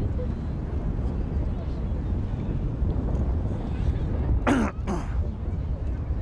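Steady low outdoor rumble with background voices. About four and a half seconds in, a person's voice gives two short bursts, each falling in pitch.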